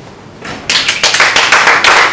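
A group of people clapping, starting suddenly about two-thirds of a second in and quickly filling out into loud, steady applause.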